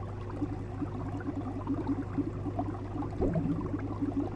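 Aquarium air bubbler running: a rapid, steady stream of bubbles gurgling up through the water over a steady low hum, with a louder burst of bubbles a little past three seconds in.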